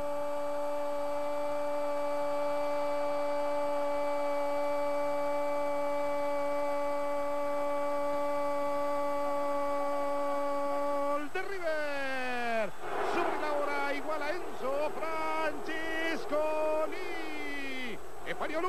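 A television football commentator's goal cry: one long, unbroken 'gooool' held on a steady note for about eleven seconds. It then breaks into shorter drawn-out shouted calls that slide down and up in pitch.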